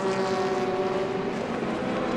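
LMP3 prototype race cars' V8 engines running at speed down a straight, a steady high engine note that holds nearly the same pitch throughout.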